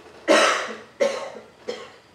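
A man coughing three times in quick succession, each cough weaker than the one before.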